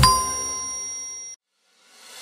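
Closing bell-like chime of a children's song, struck once and ringing down, cut off abruptly about a second and a half in. A short silence follows, then a rising whoosh starts near the end.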